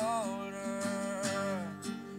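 Steel-string acoustic guitar playing chords, with a male voice holding the last sung note over it that bends at first, then stays steady and fades out near the end.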